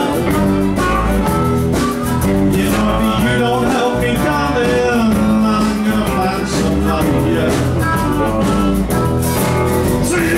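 Live blues band playing an instrumental passage: bass, drums, keyboard and guitars, with a harmonica playing over them.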